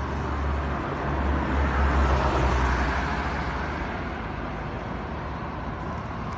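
A road vehicle driving past, its noise swelling to a peak about two seconds in and then fading, over a steady low rumble.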